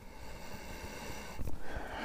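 A man sniffing in long and deep through his nose, smelling the leather of a caiman cowboy boot held to his face, then a short knock of the boot being handled about a second and a half in.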